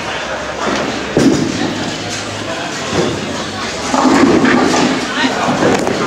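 A bowling ball thumps onto the lane about a second in and rolls toward the pins, with the pins struck and clattering from about four seconds in, in a large echoing hall with voices around.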